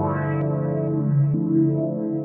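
Sustained synth pad chords playing through a low-pass filter whose cutoff is stepped by a sequencer, so the sound opens bright and then dulls within about half a second; the chord changes about two-thirds of the way through.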